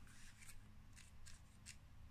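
Near silence with faint handling of tarot cards: a few soft, short scrapes as a card is slid off the pile and lifted.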